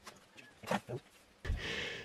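A quiet pause holding a few faint short clicks around the middle, then a soft breath drawn in near the end by the speaker, just before talking resumes.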